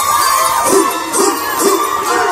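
Recorded music playing loud through a PA loudspeaker, with a crowd cheering, whooping and shouting over it.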